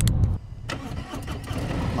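Police motorcycle engine running, loud for the first half-second, then dropping to a quieter, steady running sound.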